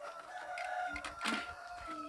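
A rooster crowing: one long, drawn-out crow.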